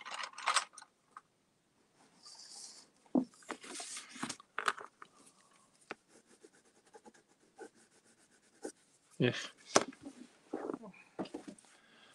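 A pen scribbling on paper in short, scratchy, intermittent strokes, with sheets of paper being shifted and rubbed against each other.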